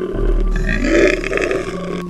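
A guttural monster growl sound effect for a clay stop-motion creature, swelling about half a second in and rasping on to the end.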